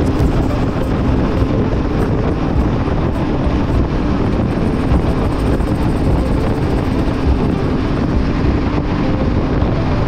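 Yamaha sport-touring motorcycle engine running steadily at highway cruising speed, with wind rushing over the helmet-mounted microphone.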